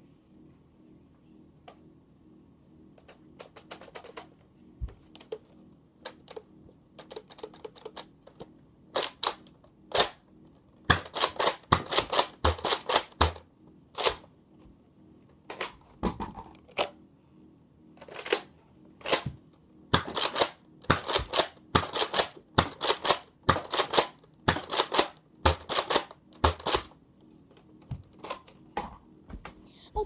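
A run of sharp plastic clicks and knocks from a Nerf blaster being worked by hand: a few scattered clicks at first, then a dense irregular stretch of them, with an occasional low thump.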